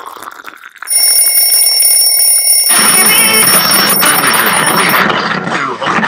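An alarm clock ringing loudly, starting suddenly about a second in and cutting off about a second before the end. A dense noisy rush joins it about halfway through.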